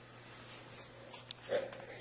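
A quiet pause with faint background hiss, a single small click a little past halfway, then a short, audible breath in just before speaking resumes.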